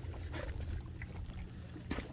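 A low, steady engine-like hum, with a couple of short crunches of rubber boots stepping on the rocky, seaweed-covered shore, about half a second in and again near the end.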